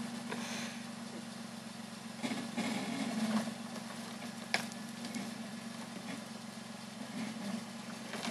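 Jeep Liberty's engine idling steadily, a low even hum. A single sharp click sounds about four and a half seconds in.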